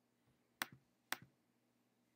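Two computer mouse clicks about half a second apart, each a sharp click followed at once by a softer one.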